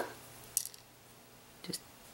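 Fingers handling a beaded bracelet make one short, faint, crisp click about half a second in, over quiet room tone.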